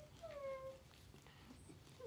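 Tricolor corgi puppy 'talking': one short whine-like call, about half a second long, that slides down in pitch in the first second, right after a rising call.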